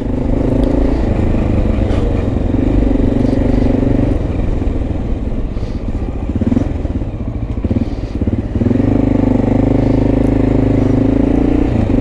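Motorcycle engine heard from the rider's seat while riding in city traffic. The engine note is steady, wavers and drops for a few seconds around the middle, then settles again.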